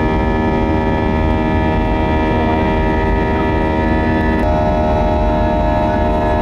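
Airliner cabin noise during the climb after takeoff: a loud, steady rumble of the jet engines and airflow, with several steady whining tones. About four and a half seconds in, the tones change abruptly, some dropping out and others shifting.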